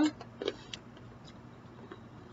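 A few light clicks and crunches from skinless peanuts being eaten by mouthful, mostly in the first second with one more near the end.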